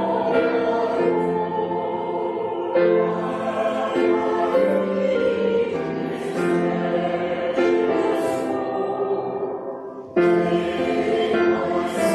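Church choir singing in held phrases, breaking off briefly about ten seconds in before the next phrase starts.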